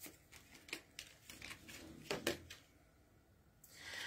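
Oracle cards being shuffled and handled by hand: a few faint, scattered card taps and flicks, the loudest a pair about two seconds in.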